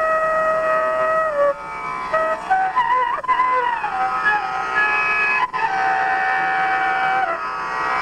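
A flute playing a slow Indian classical melody: long held notes joined by sliding, ornamented turns, with a long held note about a second in and another in the second half.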